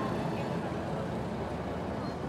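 Steady low hum of distant city traffic.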